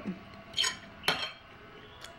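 Metal fork clinking against a dinner plate twice, about half a second apart, as food is scooped up.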